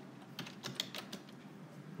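Typing: a quick, uneven run of about ten light key clicks.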